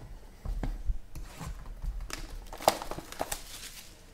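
Sealed cardboard trading-card boxes handled as one is taken off a stack and picked up: irregular knocks and scrapes of cardboard, the sharpest one about two-thirds of the way in.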